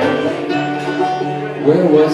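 Acoustic guitar strummed live, its chords ringing. A man's voice comes in singing near the end.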